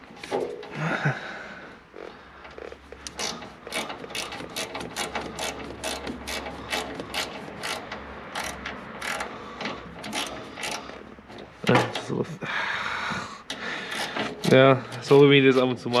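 Ratchet wrench clicking in an even run of about three clicks a second for several seconds while a fitting on an excavator's hydraulic valve block is turned.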